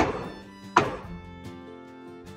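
Two heavy thunks about 0.8 s apart, each with a short ringing tail: a boot kicking the foot of a wooden wall brace to knock it loose. Background music plays under them.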